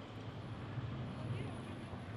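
Urban street ambience: a low, steady traffic rumble with faint indistinct voices in the background.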